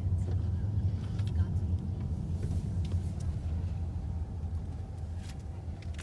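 A car's engine and tyres making a steady low rumble, heard from inside the cabin as it drives along, easing off slightly toward the end.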